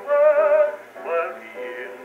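Acoustic phonograph playing an Edison Diamond Disc record: a male baritone holds the final sung word over the band accompaniment, and the band plays on after it. The sound is thin and narrow, with no deep bass and no highs, as in an acoustic-era recording.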